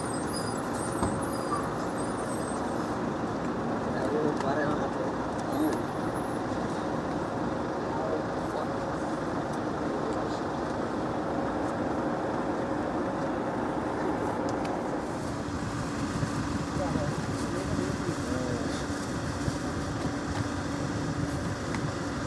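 A steady motor hum, a constant low drone that grows a little stronger about fifteen seconds in, with faint voices murmuring in the background.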